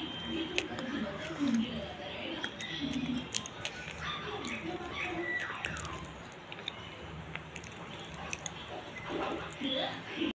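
A person chewing food close to the microphone, with many small wet mouth clicks, over background music with voices.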